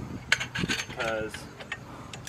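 Light metallic clicks and rattles of an aluminium RV-style ladder being handled and fitted against its mounting brackets, with a short bit of voice about a second in.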